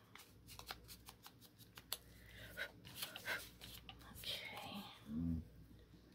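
Faint rustling and light clicks of paper pieces being handled and placed on a craft desk, with a short low hum of a voice about five seconds in.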